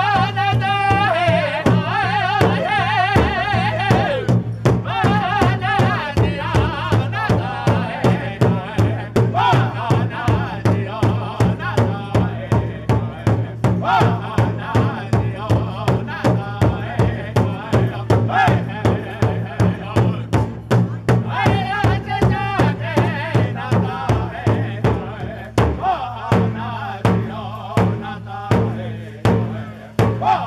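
Powwow drum group: several men beat one large shared hand drum in a steady rhythm of about two to three strikes a second while singing together in high, wavering voices.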